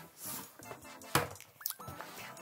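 A cardboard box being opened by hand: the lid lifted off and set aside, with soft rustling, a sharp knock about a second in, and a couple of short squeaks near the end.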